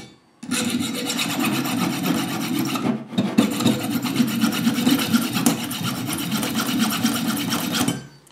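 Small hacksaw cutting into the soft brass body of an ABUS 45/50 padlock, steady back-and-forth rasping strokes biting easily into the brass. The sawing starts about half a second in and breaks off briefly around three seconds.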